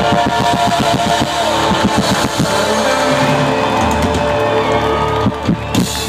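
Live band playing loud amplified folk-rock: held guitar chords over drums, with a run of fast drum hits in the first two and a half seconds.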